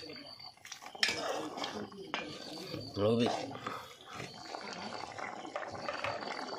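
A metal ladle knocking and scraping against an aluminium pot while stirring a simmering meat stew, with a sharp clank about a second in.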